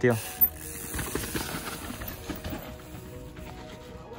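A mountain bike rolling down a steep, muddy dirt slope, with its tyres and frame clattering over the ground, busiest from about a second in and easing off near the end. Steady background music plays under it.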